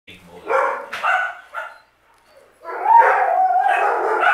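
Alaskan Malamute vocalizing: three short calls in the first two seconds, then a longer call with a falling pitch.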